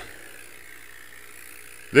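A steady, faint mechanical hum in the background, with no distinct knocks or clicks.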